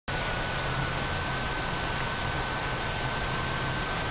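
Steady background hiss with a faint constant high-pitched whine, unchanging throughout: the recording's own room and equipment noise, with no other sound.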